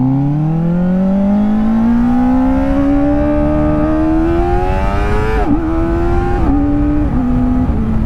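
Kawasaki ZX-4R's 399 cc inline-four engine under hard acceleration, its note rising steadily through the revs for about five seconds. An upshift then makes a quick dip in pitch, and the pitch steps down twice more near the end.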